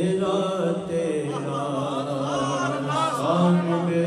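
A male reciter singing an Urdu naat in a slow, melismatic chant, holding and bending long notes over a steady low drone.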